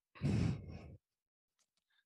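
A boy's breath blowing into a close headset microphone: one short, breathy exhale like a sigh, lasting under a second, heavy at the low end.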